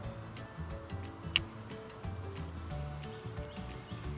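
Hand pruners snipping once through a lavender stem at its base: a single sharp click about a second and a half in, over background music.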